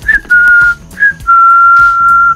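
Whistling in a series of clear, steady, single-pitch notes: a short blip, a note of about half a second, another blip, then a longer held note of about a second, over faint background music.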